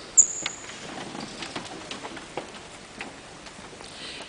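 Quiet hall with scattered small clicks and rustles from a seated audience. A brief high squeak comes just after the start and is the loudest sound.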